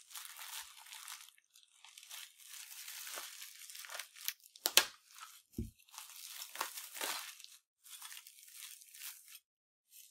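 Clear plastic wrapping and bubble wrap crinkling in irregular bursts as hands unwrap a small metal miniature, with a sharp click a little before halfway (the loudest sound) and a dull thump just after it.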